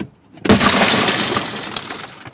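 A car side window smashed in: a sharp knock right at the start, then about half a second in the glass shatters all at once, and the broken pieces go on crackling and tinkling as they fall, fading over the next second and a half.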